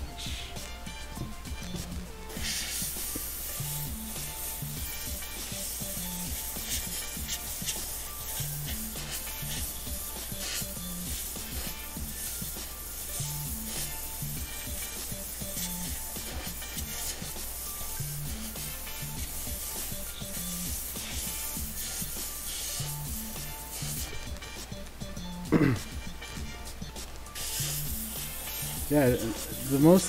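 Gravity-feed airbrush spraying paint: a steady hiss of air and atomised paint that starts about two seconds in, stops briefly around a second before three-quarters through, then resumes. Background music with a steady bass beat runs underneath, and a brief loud gliding sound cuts in about 25 seconds in.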